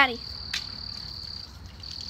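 Crickets trilling: one steady high-pitched note that breaks off briefly about three-quarters of the way through, then resumes. A small click sounds about half a second in.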